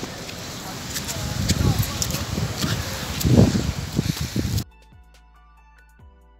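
Wind buffeting a phone microphone outdoors, with gusty rumbles and handling rustle. It cuts off suddenly about four and a half seconds in, when quiet background music begins.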